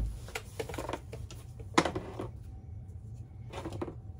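Hard plastic Flowbee spacer attachments clicking and clattering as they are handled and sorted: a few separate sharp clicks, the loudest just under two seconds in, and more near the end.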